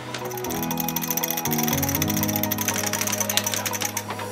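Background music: held notes that move to new pitches every half second to a second, over fast, even ticking.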